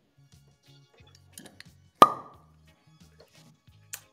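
A wine glass being set down on a hard surface with one sharp clink and a short ring about halfway through, after a faint sip of wine. Faint background music runs underneath.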